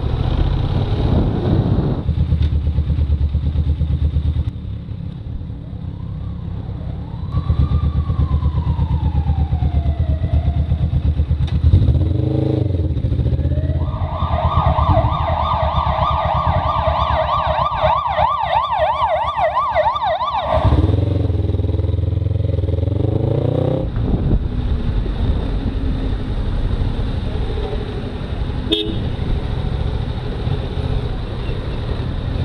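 Motorcycle engine running with road noise, heard from the rider's helmet. Partway through, a loud electronic tone warbles rapidly up and down for about six seconds, and a single falling tone sounds a few seconds before it.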